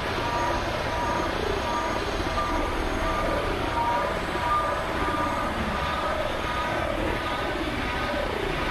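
Experimental synthesizer drone music: a dense, steady noisy wash with short high tones repeating over it and lower tones sliding down in pitch about once a second.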